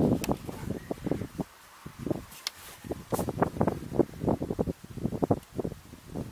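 Plastic air filter housing lid of a BMW E46's M43 engine being pressed and worked by hand, a run of irregular knocks, clicks and creaks with a short pause about one and a half seconds in. The lid will not seat because the air filter inside is not inserted properly.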